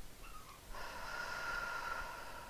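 A woman's long, audible deep breath, starting about three-quarters of a second in and running on past the end.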